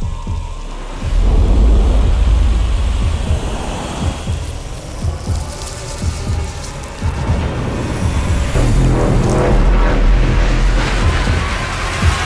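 Soundtrack music with a deep, continuous bass rumble under a dense noisy texture. It is quieter for about the first second, then swells, growing fuller toward the end.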